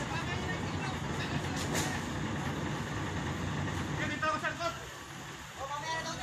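A steady low engine rumble, with people's voices calling out at the start and again about four seconds in, and a single sharp knock near two seconds.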